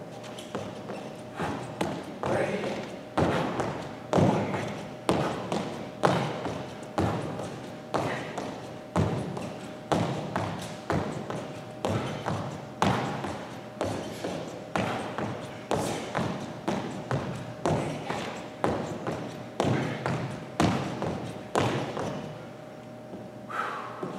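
Sneakers landing on a hardwood gym floor in repeated two-footed jumps, about two landings a second, each thump ringing briefly in the large hall.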